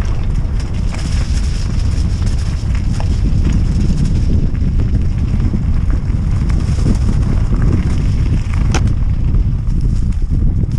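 Wind buffeting a helmet-mounted action camera's microphone while a Norco Aurum downhill mountain bike rolls fast over a gravel and dirt trail, with scattered clicks and rattles from the tyres and bike. A sharper click comes about nine seconds in.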